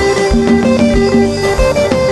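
Live band music led by an electric guitar playing a repeating line of short plucked notes over a steady kick-drum beat of about two thumps a second.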